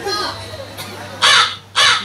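Two short, loud shouts from a human voice, about half a second apart, near the end, over faint voices.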